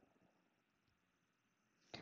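Near silence: faint room tone, with one brief faint click near the end.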